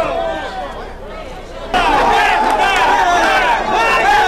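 Several people's voices overlapping, typical of spectators shouting at a football match. The voices get suddenly louder a little under two seconds in.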